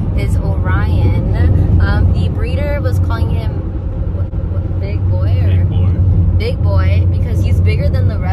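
Voices talking over the steady low rumble of a van driving on the road, heard from inside the cabin.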